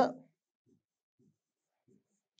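Faint, scattered taps and scratches of a stylus writing by hand on a tablet.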